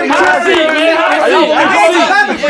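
Several men talking over one another at once, an overlapping jumble of voices with no single clear speaker.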